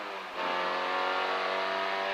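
Peugeot 205 F2000 rally car's four-cylinder engine at full throttle, heard from inside the cockpit. The note and loudness dip briefly near the start, as at a gear change, then the engine pulls on at steady high revs.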